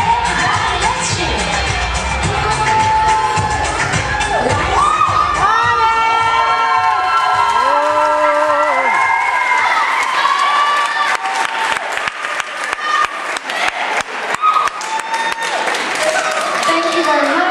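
Line-dance pop music with a thumping bass beat, cheered by a crowd, stops about ten seconds in; applause and scattered whoops follow.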